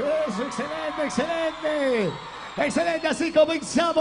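A man's amplified voice chanting and shouting in short, evenly repeated phrases, turning to quicker shouted speech in the last second or so.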